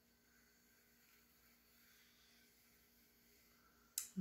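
Near silence, with the faint scratch of a pencil drawing a line on paper.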